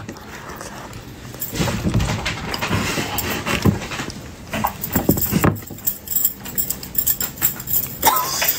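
Close-up mouth sounds of a person chewing and smacking a bite of food that is still hot, with breathing and a couple of short hums.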